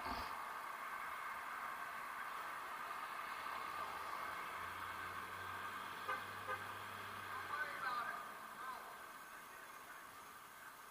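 City street traffic with a car engine passing, its low hum rising in the middle and fading, and faint voices of people talking near the end.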